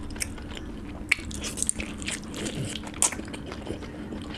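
Close-miked chewing and biting of chicken curry and rice: wet, smacking mouth sounds broken by sharp clicks, the loudest about a second in and again at three seconds, over a faint steady low hum.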